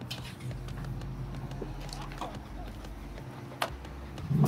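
Footsteps on pavement and small handling clicks over a steady low hum, with one sharp click near the end like a car door latch.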